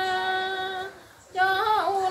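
Woman's voice singing a traditional Mường folk song unaccompanied: a long held note, a short breath about a second in, then the melody resumes with a bending, wavering note.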